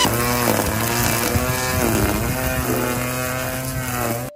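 Cordless electric Ryobi lawn mower running under load as it is pushed through grass: a steady motor hum whose pitch sags and recovers about halfway through.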